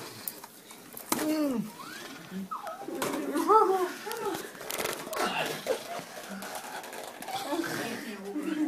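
Several people's voices in a small room making wordless calls and exclamations, the pitch sweeping up and down in arcs, loudest about a second in and again around three and a half seconds in.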